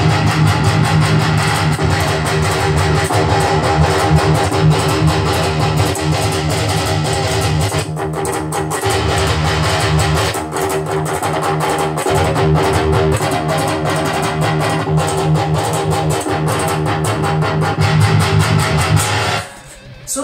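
Electric guitar played through a Peavey Vypyr 15 digital modelling combo amp: high-gain riffing with heavy low chugs, starting on the amp's Peavey Triple XXX model and with short breaks where the amp model is switched. The playing cuts off suddenly just before the end.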